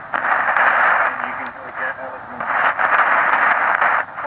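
Tecsun shortwave receiver's speaker playing a weak AM broadcast from ABC Australia on 2325 kHz: faint talk buried under loud hiss and crackle. The noise swells and dips as the signal fades in and out.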